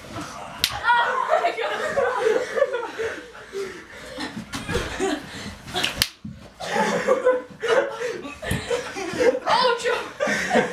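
Boys roughhousing: a few sharp smacks among scuffling, with wordless shouting and laughter.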